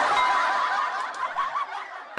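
Snickering laughter, thin-sounding with little bass, fading out toward the end.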